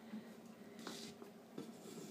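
Faint handling sounds of a large hardcover book's cover being swung open by hand: a soft rub about a second in and a few light taps.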